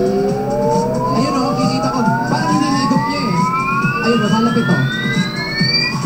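A single long electronic tone glides steadily upward in pitch for several seconds, siren-like, and stops abruptly near the end. A busy mix of background voices sits beneath it.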